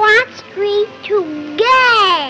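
A young child singing in a sing-song voice, the pitch sliding up and down between short phrases, ending on a long drawn-out note near the end.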